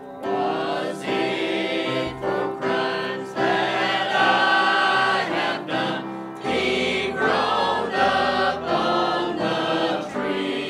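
A mixed church choir of men's and women's voices singing a hymn together. A new line starts right at the beginning after a brief breath, and the singing then runs on phrase after phrase.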